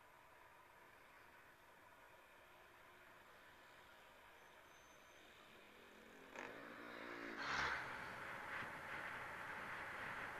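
Motorcycle riding noise, very faint at first. About six seconds in it gets louder: an engine hum from an oncoming truck rises and falls as it passes, and then steady wind and road noise follows.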